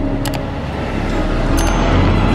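Mercedes-AMG C63 S coupe's twin-turbo V8 driving past close to the camera, growing louder as it nears. Music plays underneath, with two pairs of short mouse-click sound effects.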